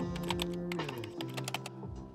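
Rapid, irregular clicks of computer-keyboard typing, used as a sound effect over soft background music with held notes.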